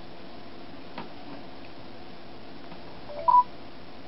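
A short two-note electronic beep from a smartphone about three seconds in, a lower note stepping up to a higher one: the voice assistant app's prompt that it is now listening for a spoken command. A faint click about a second in.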